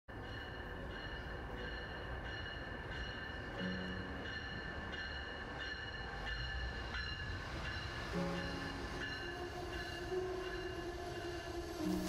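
A passenger train moving through an underground station: a steady low rumble with constant high-pitched whining tones over it. Two short, low horn-like tones sound about a third and two thirds of the way in, and a longer low tone begins near the end.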